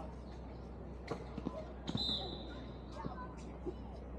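Basketball bouncing on a hard court, a few scattered thuds, with a short high squeal about halfway through.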